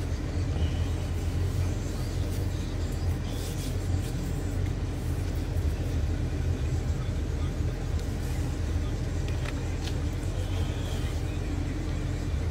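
A steady low rumble, typical of a running vehicle heard from close by, with a few faint brief noises on top.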